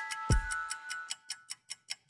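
Clock-ticking sound effect, fast and even at about six or seven ticks a second, with a low thump about a third of a second in and a fading tone from the intro music's last note.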